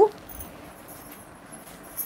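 The end of a woman's spoken word, rising in pitch, then quiet room tone with faint soft rustles from a saree being unfolded and a small click near the end.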